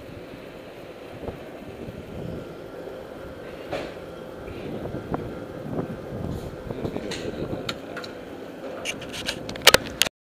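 Footsteps and rubbing handling noise from a camera carried while walking, over a faint steady hum, ending in a quick run of sharp clicks, the loudest just before the end.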